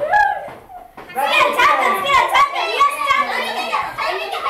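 A group of schoolchildren talking and calling out over one another in a classroom; the voices drop off briefly about half a second in, then start up again loudly about a second in.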